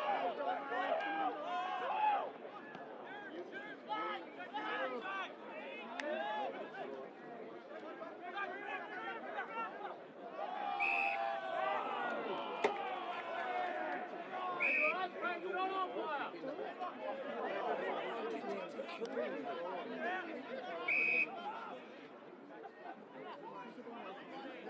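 Spectators and players talking and calling out over one another at a football ground. Three short, shrill umpire's whistle blasts cut through, at about 11, 15 and 21 seconds in, with a single sharp knock just before 13 seconds.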